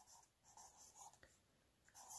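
Near silence with a few faint, soft scratching and rubbing sounds of a marker and hand moving over a paper notebook page.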